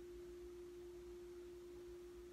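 A faint, steady hum at a single mid pitch, unchanging, with nothing else heard.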